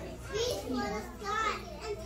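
Young children talking in short, high-pitched phrases.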